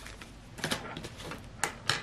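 A paper cash envelope being handled: a few short, crisp paper rustles and taps, spaced apart, over quiet room tone.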